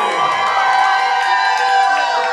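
A wedding crowd cheering and shouting on the dance floor as the dance music drops away in a steep falling pitch sweep at the start.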